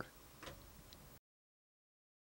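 Near silence: faint room tone with a soft click about half a second in, then the audio cuts off to dead silence just over a second in.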